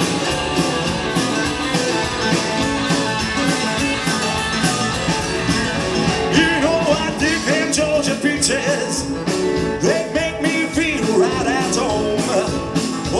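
A live rock band playing loud: electric guitars, bass guitar and a drum kit, with a voice singing in the second half.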